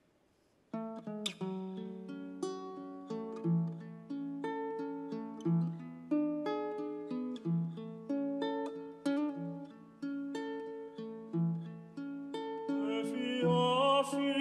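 Ukulele playing a plucked, arpeggiated introduction to a Tongan love song (hiva kakala), starting about a second in. A male voice begins singing over it near the end.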